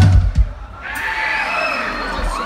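A few deep bass thumps from a live band's stage sound system, then a concert crowd cheering and shouting.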